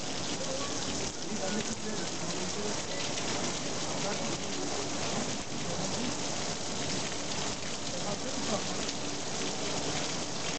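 Heavy rain falling on stone steps and paving, a steady, dense hiss of drops with no break.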